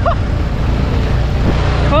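Small 6-horsepower outboard motor running steadily under way, with water rushing and splashing at the hull.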